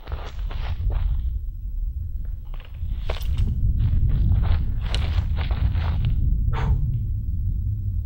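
Footsteps shuffling on gravel and dirt, with rustling of clothing and gear, irregular short scuffs over a steady low rumble.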